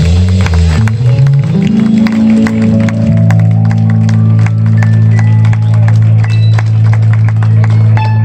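Live band of keyboard, electric guitar, bass guitar and drums playing; the moving bass line settles into one long held chord about a second and a half in, with drum and cymbal hits over it.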